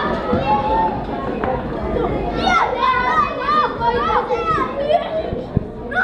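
Children's excited voices, high calls and exclamations over a foosball game, with the knocks of the rods and ball; a sharp clack near the end is the loudest sound.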